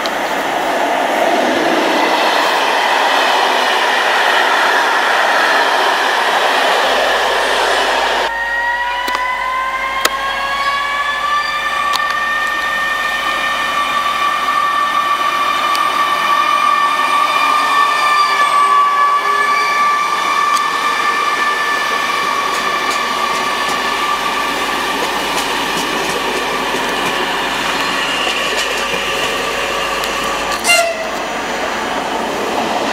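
Passenger trains passing station platforms. First comes the even noise of wheels on the rails. About eight seconds in, the sound switches abruptly to a steady high whine that rises a little and then holds.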